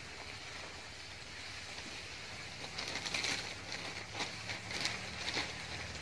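Quiet rustling and scraping as a mango seedling is worked into a black plastic nursery bag of soil. Short, crisp scrapes cluster in the second half.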